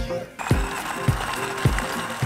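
A food processor's motor starting about half a second in and running steadily, its blade blitzing slices of bread into crumbs, under background music with a steady beat.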